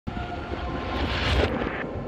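TV show title sting: a rushing whoosh over a deep bass rumble, swelling to a peak about one and a half seconds in and then cutting off, with a few steady music tones held underneath.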